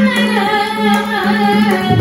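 A woman singing a Carnatic song in raga Abheri, with a violin following her melody over a steady electronic tanpura drone. Mridangam strokes turn loud and dense right at the end.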